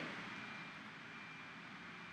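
Faint steady hiss of a recording's room tone, with a thin, steady high-pitched tone running through it.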